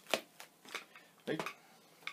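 Inflated twisting balloons being handled: a sharp knock just after the start, then a few short ticks and rustles.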